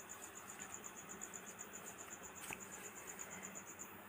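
Faint, fast, evenly pulsed chirping of a cricket, over a soft sizzle of pakoras frying in hot oil in an iron kadai.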